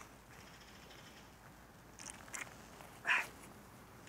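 Mostly quiet, with one short chicken call about three seconds in and a couple of faint, brief high-pitched sounds just after two seconds.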